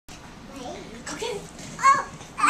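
A young child's wordless vocalising, ending in a short, loud, high-pitched squeal.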